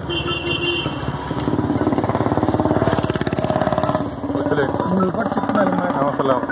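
A motorcycle engine running close by, with a fast, even pulse that is loudest in the middle seconds before fading, while a man talks.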